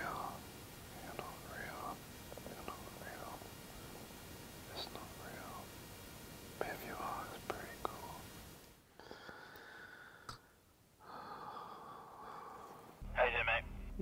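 A man whispering quietly. A louder man's voice starts about a second before the end.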